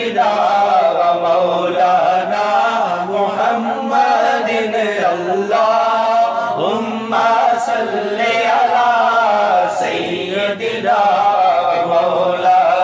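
A man singing Urdu devotional verse (naat) unaccompanied, in a chanting style, in long melodic phrases with brief pauses for breath.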